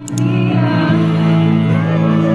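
A woman singing through a microphone over guitar accompaniment: live, amplified music, starting suddenly at the cut.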